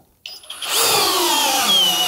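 Flex 18 V cordless drill driver running against the soft-joint load of a torque test rig. About a second in, its motor whine starts, and it falls steadily in pitch as the resistance builds and the drill bogs down.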